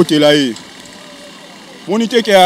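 A man's voice speaking in the first half-second and again near the end, with a pause of faint street background in between.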